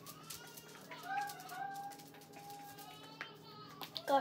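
A child's voice held on a long, wavering high note without words, with faint clicks and taps of plastic bottles being handled and shaken.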